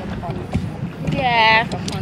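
A woman's voice making one drawn-out vocal sound of about half a second, a little past the middle, over a steady low rumble.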